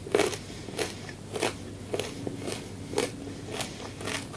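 A person chewing a mouthful of food close to a clip-on microphone, with a steady run of sharp mouth clicks and crunches about once every 0.6 seconds, seven in all.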